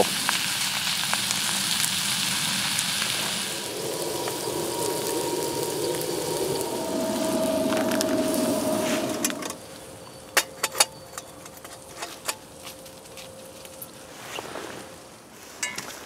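An omelette sizzles in a cast-iron skillet on a wood-burning camp stove for the first three or four seconds. A lower rushing sound of the stove's flames follows. From about halfway through it is much quieter, with scattered sharp crackles of the burning wood.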